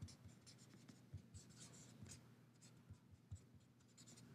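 Felt-tip marker writing on paper: faint, irregular scratches and taps of the pen strokes.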